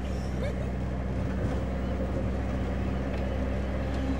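Taxi cab engine and road noise heard from inside the cab: a steady low hum.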